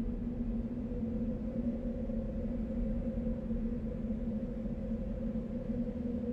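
A steady low drone made of two sustained tones, one an octave above the other, over a low rumble, swelling in at the start and then holding level.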